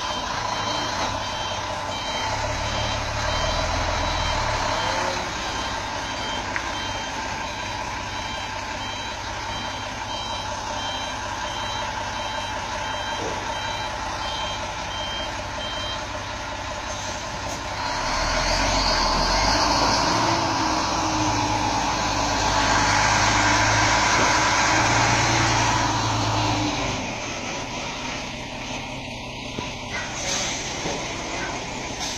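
A B-double (Superlink) truck's reversing alarm beeps evenly, about once a second, over its running diesel engine, then stops about halfway through. Soon after, the engine grows louder for several seconds before easing off near the end.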